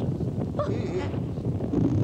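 Cartoon character's startled, wavering "Oh" over a low, continuous rumble.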